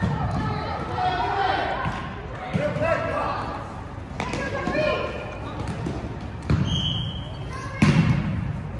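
Players shouting during an indoor soccer game, voices echoing in a large gym hall, with ball kicks and thuds on the court floor. A brief high steady tone sounds about seven seconds in.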